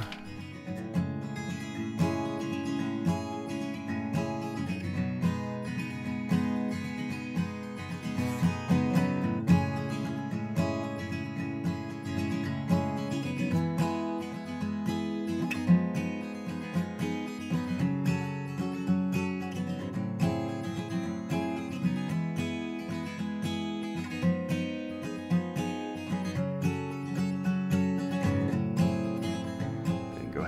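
Background music played on acoustic guitar.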